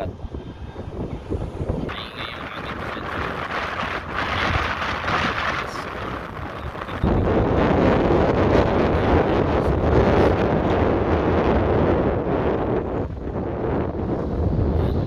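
Wind buffeting the microphone, a noisy rush that jumps sharply louder about seven seconds in, over the running of a riding lawn mower cutting grass.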